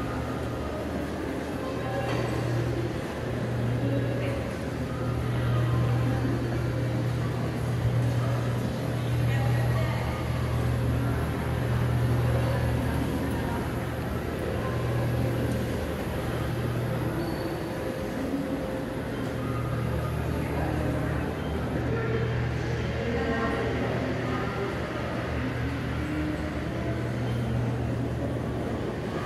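Train station concourse ambience: a steady low hum with faint, indistinct voices over it.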